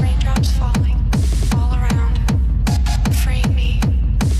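Hard techno track playing at full volume: a heavy kick drum comes in right at the start, after a build-up, and keeps an even beat of about three hits a second under synth notes.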